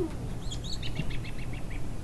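A bird calling: a quick run of short, high chirps that steps down in pitch and lasts about a second.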